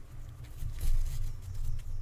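Faint rustling and handling noise from a piece of hessian being turned and pulled in the hands during hand stitching, over a steady low rumble.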